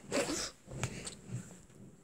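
Brief rustling handling noise of a tablet held in the hand while recording, with a single sharp click about halfway through.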